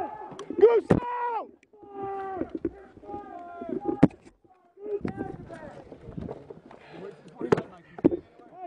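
Soldiers shouting over one another, strained and unintelligible, during a firefight. Three single sharp gunshots crack through: about a second in, about four seconds in, and near the end.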